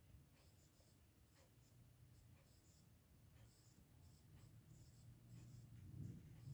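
Faint, short scratching strokes of a stylus writing numbers on a tablet screen, over a low room hum.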